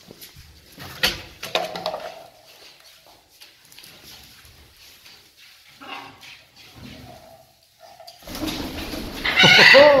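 Blue-and-gold macaw working at a cardboard toilet-paper roll on a tiled floor: a few sharp knocks about a second in, then faint scattered scraping. Near the end comes a rush of wing flapping, followed by a loud call.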